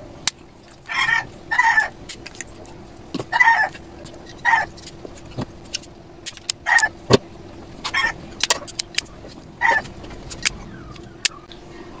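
A bird calling over and over in short calls of about half a second each, mixed with sharp clicks and taps from circuit boards and a plastic enclosure being handled.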